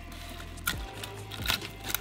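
A kitchen knife cutting the gills out of a salmon head: a few short, sharp clicks and snips over steady low background music.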